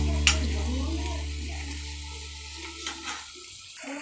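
Background music dying away over a steady sizzle of macaroni and egg frying in a pan, with a few light clicks.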